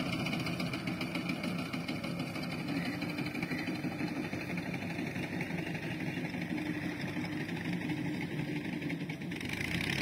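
Tractor engine idling steadily.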